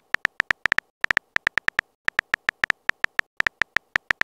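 Phone keyboard typing sound effect: a rapid, uneven run of short clicks, about seven a second, with a couple of brief pauses.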